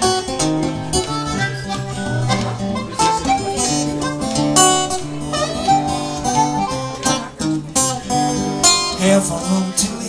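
Blues harmonica playing an instrumental break of held and bending notes over a steadily picked and strummed acoustic guitar.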